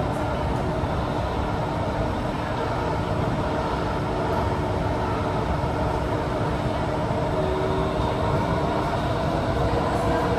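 Steady running noise inside a Kawasaki & CRRC CT251 metro car in motion: an even rumble of the wheels on the rails, with faint held tones over it.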